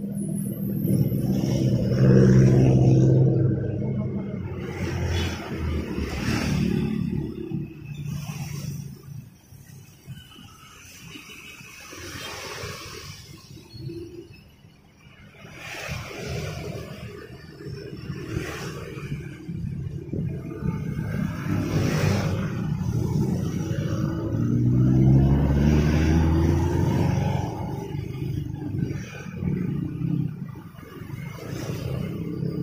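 Motor vehicles passing close by on a road: engine rumble swells a second or two in, fades, and swells again near the end with an engine rising in pitch as it accelerates. A few sharp clicks in between.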